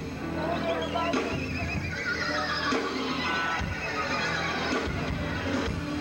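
Live rock band playing. Near the start a high, wavering note slides down in pitch over about two seconds over the band's sustained chords.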